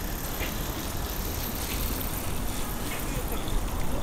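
Steady outdoor city background noise: a low, even rumble like distant traffic, with faint far-off voices.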